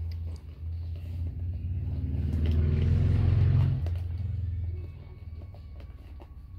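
A low rumbling hum swells over a couple of seconds, peaks about halfway through and fades. Light clicks and rustles come from small items being handled in a zippered pouch.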